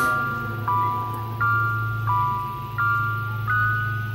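Background music: a bell-like mallet melody, each note held until the next, changing about every 0.7 s, over a steady low hum.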